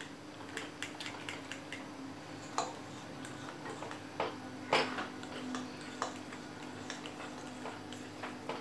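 Metal spoon stirring thick batter in a bowl, clinking and scraping against the bowl in a run of irregular clicks, with one louder clink about halfway through. A faint steady hum runs underneath.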